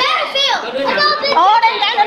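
Children's voices talking and exclaiming over one another, high and excited, with no other sound standing out.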